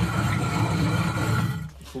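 Hand-turned stone mill for grinding cornmeal: the upper millstone grinding round on the lower stone, a steady rumble that stops about one and a half seconds in.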